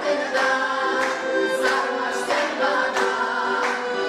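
A small women's folk choir singing a Gagauz song in harmony, with long held notes.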